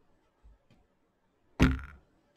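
Two faint taps, then one loud sharp knock about one and a half seconds in that dies away quickly: a hard object being bumped or set down.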